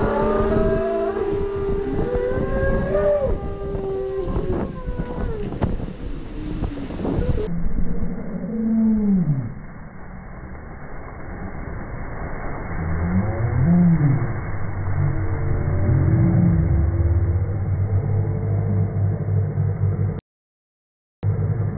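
Riders' screams and shouts played back slowed down, so the voices come out deep, drawn-out and moaning, with long falling glides, over a steady rush of ride and water noise.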